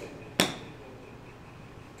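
A golf club striking a ball off an artificial turf mat in a chip shot: one sharp click about half a second in.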